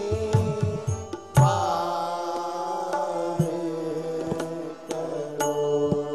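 Devotional chanting sung into a microphone over sustained instrumental accompaniment, with sharp drum strikes, the loudest about a second and a half in.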